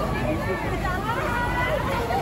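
Crowd babble: many people talking and calling out at once close by, their voices overlapping over a steady low rumble.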